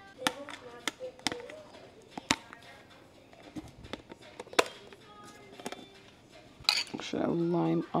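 Kitchen utensils and dishes knocking and clinking as breakfast is made: a handful of irregular sharp clicks and knocks, the loudest a little after two seconds and midway through.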